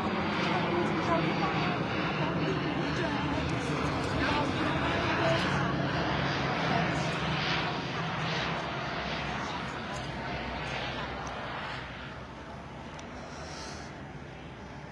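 A steady engine drone that fades about twelve seconds in, with indistinct voices in the background.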